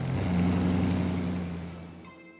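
Straight-piped V8 exhaust of a 2015 Dodge Challenger R/T driving by, a steady low engine note that swells about half a second in and then fades away.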